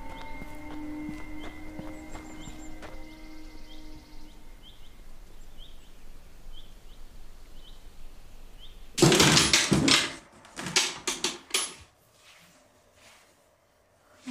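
Quiet music score of held notes with a high chirp repeating about twice a second, fading out about four seconds in. About nine seconds in come loud thuds and scrapes for about three seconds: the buried wooden box being dug out of the dirt.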